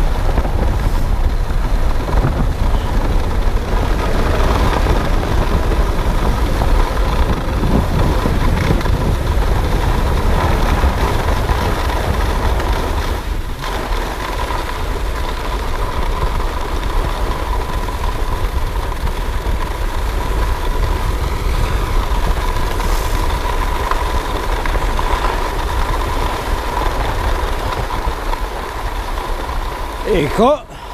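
Wind rushing over the camera's microphone with the steady scrape of skis gliding over groomed snow on a downhill run, a heavy low rumble underneath.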